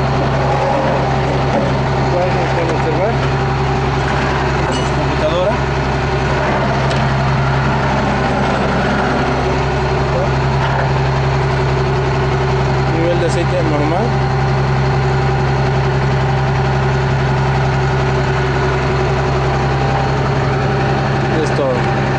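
A car engine idling steadily, a low even hum that neither rises nor falls, with faint voices in the background.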